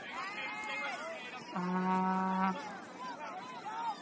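A horn sounds one steady low note for about a second, starting about a second and a half in, over distant shouting from spectators and players.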